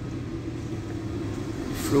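A car moving slowly on a dirt road, heard from inside the cabin: a steady low rumble of engine and tyres.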